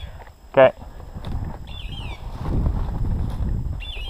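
Footsteps and brush rustling as a person walks through thick young conifer and brush cover, heavier in the second half. A faint high chirp falling in pitch comes twice, about two seconds apart.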